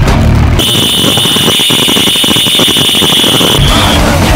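Harsh noise music: a loud, dense wall of distorted noise. About half a second in, a steady high tone enters as the bass drops out, and it cuts off shortly before the end.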